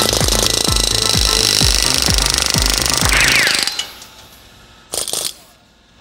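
Pneumatic air hammer (a Jupiter Pneumatic) running in a rapid, continuous rattle as it drives wheel studs out of a wheel spacer, with music with a steady beat underneath. The hammering stops after nearly four seconds, and a short burst of it follows about a second later.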